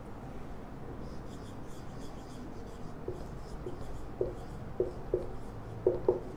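Felt-tip marker writing on a whiteboard: scratchy pen strokes, with short squeaks of the tip on the board that come more often and louder in the second half.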